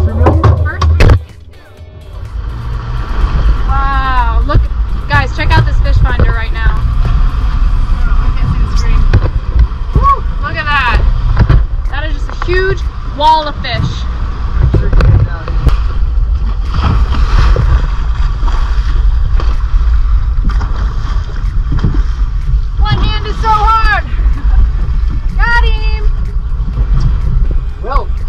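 Background music with a singing voice over a steady low rumble. The level drops sharply for a moment about a second in.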